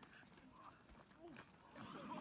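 Faint human voices, with a few light clicks; a louder voice starts near the end.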